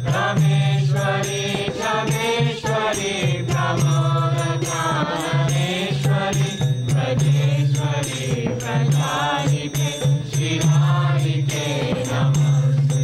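Group kirtan: a chorus of voices singing a devotional chant, accompanied by a mridanga drum and a steady percussion beat.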